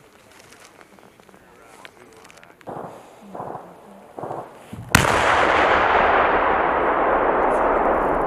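Bangalore torpedo detonating: a single sudden sharp blast about five seconds in, followed by a long rolling rumble that slowly fades. The charge is blasting a breach lane through a concertina-wire obstacle.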